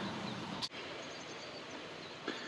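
Faint, steady outdoor background noise with no distinct event, broken by a brief dropout less than a second in.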